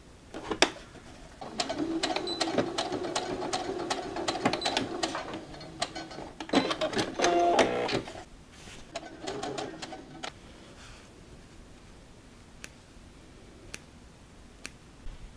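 Domestic sewing machine stitching a short reinforcing seam near the top edge of a fabric bag, running for several seconds, loudest just before it stops about eight seconds in. A few faint clicks follow.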